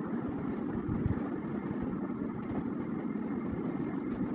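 Steady low background rumble, like a machine running, with a few faint irregular low knocks.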